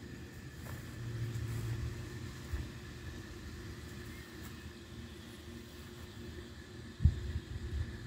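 A faint, steady low rumble, a little stronger about a second in, with a few short low thumps near the end.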